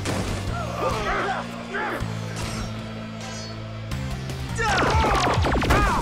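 Action-score music under staged fight sound effects: grunts and yells from the fighters, then a quick flurry of punches and hits with shouts in the last second and a half.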